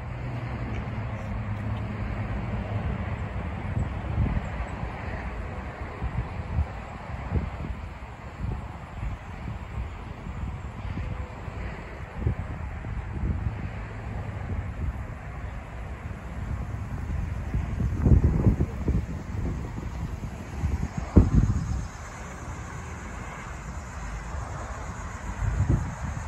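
Wind buffeting the microphone, with a low steady rumble through roughly the first two thirds and several heavy gusts near the end.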